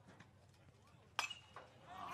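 A baseball bat strikes a pitched ball about a second in: one sharp ping with a brief ring, the contact that sends up a pop fly.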